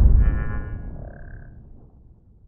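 Tail of a cinematic intro sound effect: a deep, booming rumble fading away over about two seconds, with a brief high shimmer of tones in the first second and a half.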